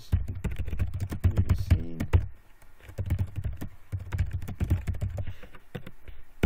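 Typing on a computer keyboard: quick runs of key clicks, busiest in the first two seconds, then lighter, spaced strokes.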